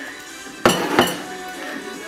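Dinner plate set down on a kitchen countertop: two sharp clinks about a third of a second apart, each ringing briefly, over faint background music.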